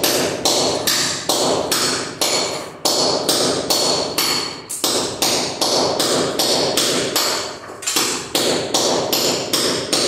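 Hand tool striking ceramic floor tiles to break them loose from a concrete subfloor: steady, evenly spaced sharp blows, a little over two a second.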